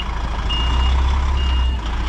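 DAF truck tractor's reversing alarm beeping, a single high tone about once a second, over the low running of its diesel engine as it backs under a semi-trailer to couple.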